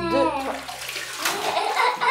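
A child gives a short vocal "hein" at the start, then bathwater sloshes and splashes as she moves in the tub.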